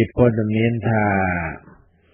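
Speech: a man's voice narrating in Khmer, with one long drawn-out syllable.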